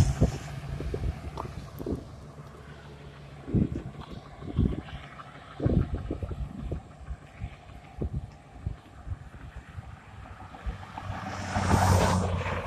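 Wind buffeting the microphone in irregular gusts over road traffic noise. A truck passes close by at the start, and another vehicle goes by near the end.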